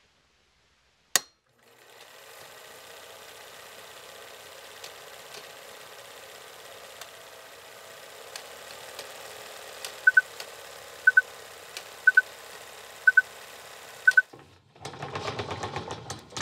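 Vintage film-projector sound effect: a sharp click about a second in, then a steady running hiss and clatter with faint crackles. From about ten seconds in, a short double beep sounds once a second, five times, as the countdown leader ticks down, and a louder burst of noise follows near the end.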